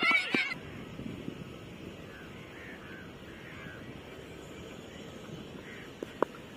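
High-pitched shouting from children in the first half second, then steady open-air ground ambience with faint, distant voices.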